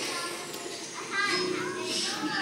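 Young children's voices singing a song together as a group, a little louder past the middle.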